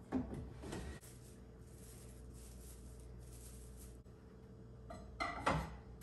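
Decor items being handled and set down on a shelf: a short burst of knocks and clatter at the start and another about five seconds in, with faint rustling in between. A steady low hum runs underneath.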